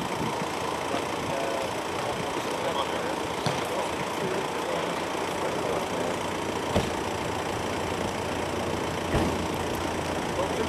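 A car engine idling steadily, with a few short knocks over it.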